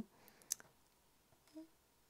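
Near silence, with one light sharp click about half a second in as hands handle dressmaking pins in the fabric, and a faint brief hum later on.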